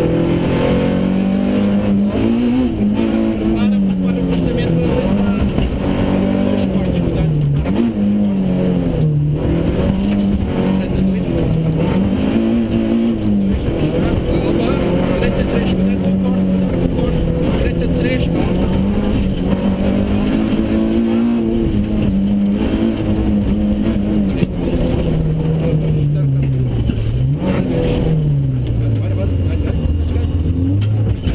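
Rally car engine heard from inside the cabin, its pitch climbing through the gears and dropping sharply on lifts and downshifts, over and over through the bends.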